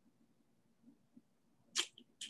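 Near silence, then one short hiss near the end, like a whispered consonant.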